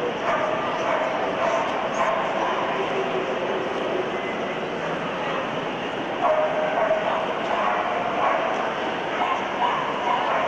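A Samoyed whining in long, steady, high cries, once at the start and again from about six seconds in to near the end, over the chatter of a crowd.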